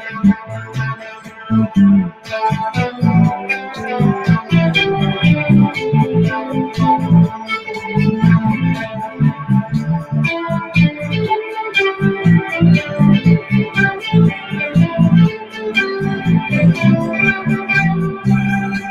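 Psych rock band playing an instrumental passage live: electric guitars and keyboard over a steady beat.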